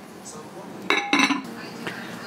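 A metal spoon clinking against kitchen dishes: a few short, ringing clinks about a second in, after a quiet start.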